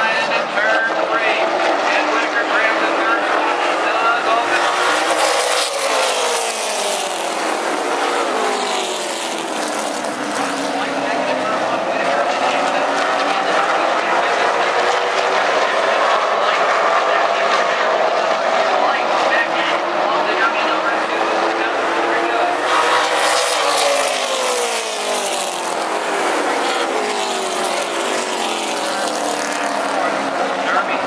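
Late model stock cars' V8 engines running at racing speed around a short oval track, the pack passing twice with the engine pitch dropping as the cars go by, about six seconds in and again at about twenty-three seconds.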